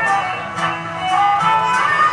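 Traditional Baluchi string accompaniment playing a short instrumental passage between sung lines: a bowed fiddle (suroz) holds sustained melodic notes over plucked strings.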